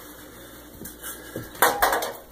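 Burner drip bowl being handled in an electric stove's burner well: a few light knocks, then a louder clatter of the bowl against the stovetop about one and a half seconds in.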